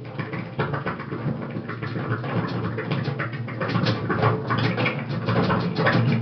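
Improvised drum kit playing: a rapid flurry of light stick strokes and scrapes on the snare and cymbals, growing denser and louder toward the end, over a steady low hum.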